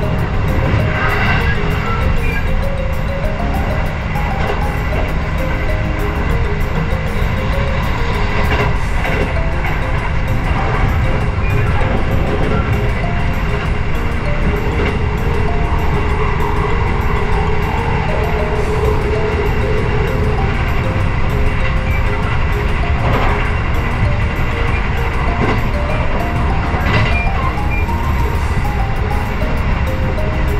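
Steady low rumble of a moving commuter train heard from inside the carriage, mixed with soft background music.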